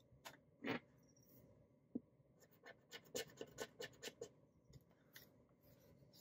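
Faint rustling and scratching of paper being handled, with a quick run of short scratchy strokes in the middle.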